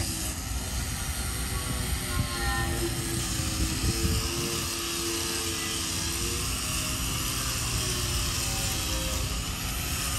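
Handheld electric angle grinder grinding a steel plate: a steady, even grinding noise with a faint wavering whine.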